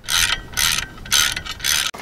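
Socket ratchet wrench clicking through four quick strokes, about two a second, as it tightens a bolt.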